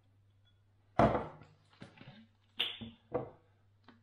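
Handling sounds at a kitchen worktop: a sharp knock about a second in, then two shorter clatters as a plastic squash bottle is picked up and its screw cap taken off and set down.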